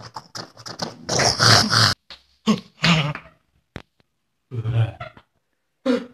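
A man making wordless vocal noises in a string of short bursts, the longest and loudest lasting about a second between one and two seconds in, each stopping abruptly.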